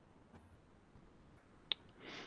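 A single short, sharp click near the end, over faint steady hiss.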